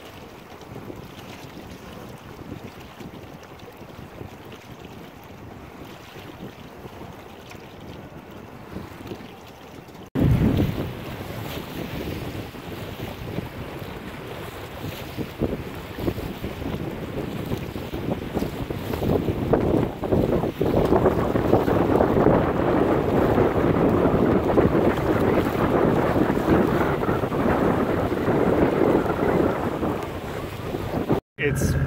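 Wind buffeting the microphone over the wash of river water around a small sailboat. After a sudden cut about ten seconds in it is much louder and gustier.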